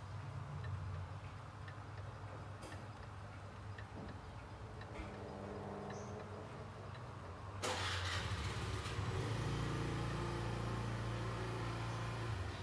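Antique Meiji pendulum wall clock with a coil gong: faint ticking, then about eight seconds in the hammer strikes the gong and a deep ring sustains to the end, the clock striking the hour at six o'clock.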